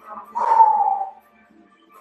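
A woman's short drawn-out vocal call, a single held sound that falls slightly in pitch, over faint background music.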